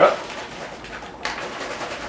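Swollen foil liquid-yeast smack pack being shaken by hand, a crinkly rustling that sets in a little over a second in, stirring the settled yeast up from the bottom of the pack.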